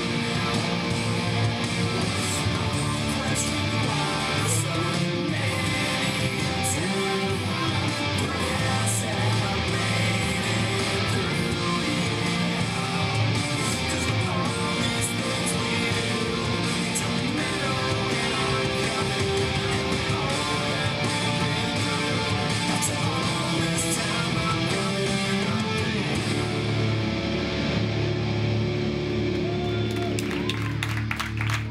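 Amplified electric guitar playing continuously. The bright upper part of the sound drops away in the last few seconds.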